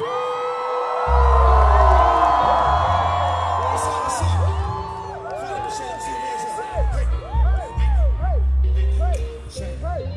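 Concert crowd cheering and whooping. About a second in, a hip-hop beat with heavy bass kicks in over the PA, and the cheering eases off after a few seconds while the beat runs on.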